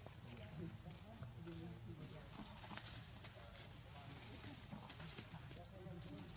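Quiet outdoor ambience: a steady high-pitched insect drone, with faint scattered voices and a few sharp clicks, the loudest about three seconds in.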